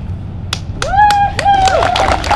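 An audience starts clapping about half a second in, and voices join with several drawn-out, high cheers over the claps.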